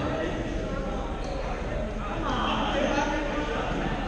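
Badminton hall hubbub: indistinct voices of many players and onlookers, with scattered knocks from rackets, shuttles and feet on the courts.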